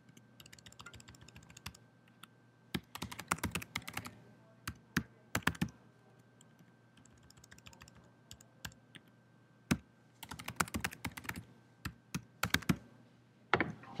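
Typing on a small laptop keyboard: runs of rapid key clicks in several bursts, separated by pauses and a few single keystrokes.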